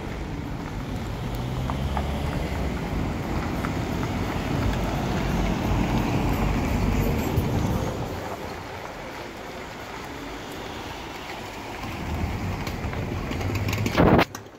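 Slow street traffic: car and pickup engines running at low speed, a steady low rumble that is loudest in the first half, drops off about eight seconds in and builds again near the end.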